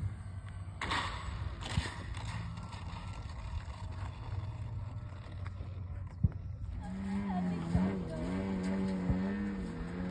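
Wind rumbling on the microphone, then, about seven seconds in, a radio-controlled model airplane's motor and propeller start running at taxi power, the pitch rising and dipping as the throttle is worked.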